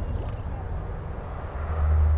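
Wind rumbling on the camera microphone, dipping and then swelling louder about three-quarters of the way through.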